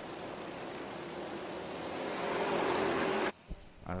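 Honda Cadet racing karts' small four-stroke engines running as a pack on track, a steady engine noise that grows louder about halfway through and then cuts off abruptly near the end.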